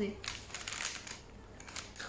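A pen being tried out on paper: a few faint, short scratchy strokes with some paper rustle.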